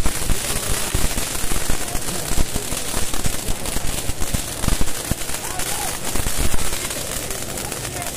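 Firecrackers going off in a dense, irregular run of rapid cracks and pops, over the steady hiss of handheld fountain fireworks spraying sparks.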